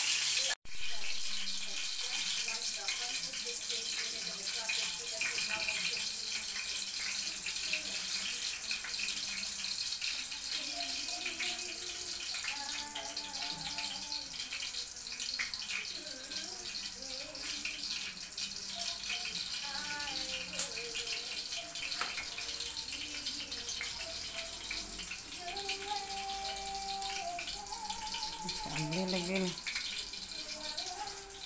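Rolled pork chop morcon frying in hot oil in a pan, a steady sizzle throughout. Faint voices can be heard under it in the second half.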